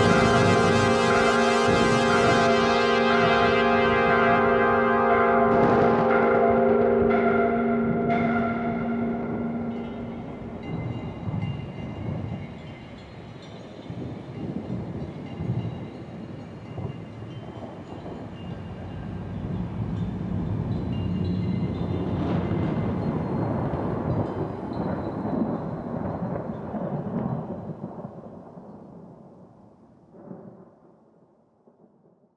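A sustained chord of several held tones fades out over the first ten seconds. It gives way to a low rolling rumble of thunder, which swells in the second half and dies away near the end.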